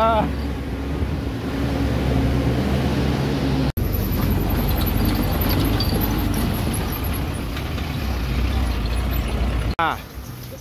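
Off-road jeep's engine running steadily while riding in the open back, with wind and road noise; the sound changes abruptly at a cut about four seconds in.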